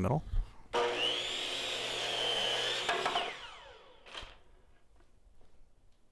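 DeWalt miter saw crosscutting a walnut board: the motor starts and the blade cuts with a steady high whine for about two and a half seconds, then winds down with a falling whine. A brief knock follows.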